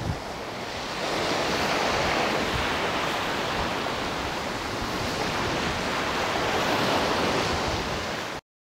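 Steady rush of wind and sea surf on a windy beach, with gusts buffeting a clip-on lapel microphone; the noise grows louder about a second in.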